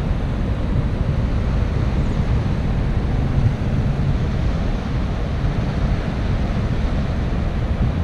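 Water pouring through McNary Dam's spillway gates, heard across the river as a steady rushing noise, with wind rumbling on the microphone.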